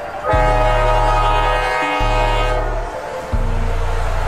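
Locomotive air horn sounding one long blast of several tones together, from just after the start to about two and a half seconds in, with background music underneath.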